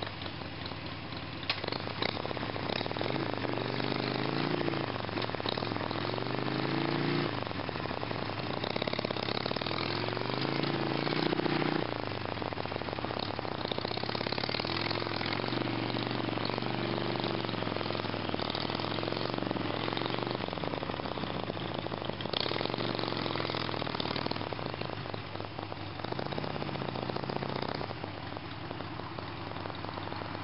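V-twin motorcycle engine revving up and down over and over as the bike claws up a wet grassy slope with its rear tyre slipping. It drops to a lower, steadier note near the end.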